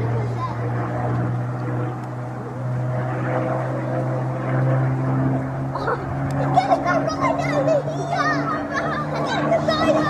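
Spitfire's piston aero engine droning overhead as a steady low hum, rising slightly in pitch in the second half as the aircraft comes closer, with people's voices over it.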